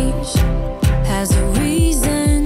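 Upbeat pop background music; a steady kick-drum beat of about two hits a second comes in right at the start, under a melody.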